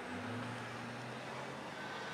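Quiet room tone: a faint steady low hum under a soft hiss.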